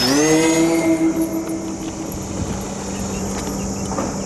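Twin electric motors and propellers of an RC plane winding up to full throttle, the whine rising in pitch to about a second in and then holding steady. The higher whine fades out about two seconds in while a lower steady hum carries on.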